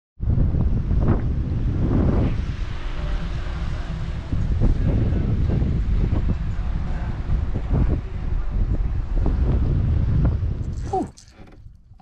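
Strong wind buffeting the camera microphone: a loud, uneven, low rumble that drops away about a second before the end.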